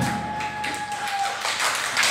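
The last held note of a live blues band rings out and fades after the final chord, while a few people begin clapping, the clapping thickening near the end.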